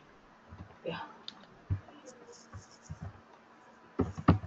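Soft, scattered keystrokes on a computer keyboard as a few letters are typed, with a brief faint voice about a second in.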